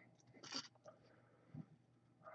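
Near silence, broken only by a faint brief rustle about half a second in and a soft tap around a second and a half in, from fingers handling a trading card.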